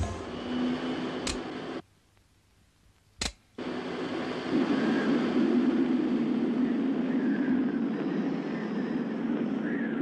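Cartoon sound effect of a small spinning hand fan, a steady whirring noise. It drops out for about two seconds, broken by a single click, then comes back louder and steady.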